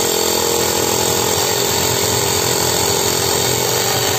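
Portable electric air compressor of the handheld tyre-inflator type running steadily, its motor and pump humming evenly as it pumps air to build pressure in a diaphragm pressure gauge.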